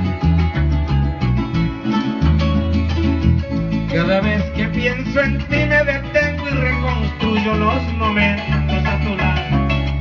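Venezuelan música llanera played live: a llanero harp plucking quick runs over a steady, rhythmic bass line.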